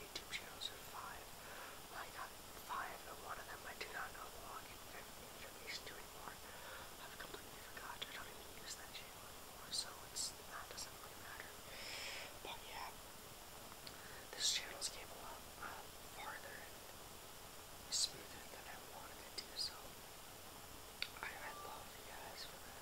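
A person whispering, with a few sharper hissing sounds among the words.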